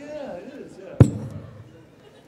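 A single sharp thump about a second in, picked up by a live handheld microphone as it knocks against its mic stand, with a short ring of reverberation in the hall after it.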